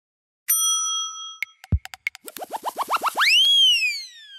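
Sound-effect sting for an animated logo intro: a ringing chime about half a second in, then a few clicks and a low thump. A quickening run of short rising chirps follows and turns into one long tone that rises and then glides down.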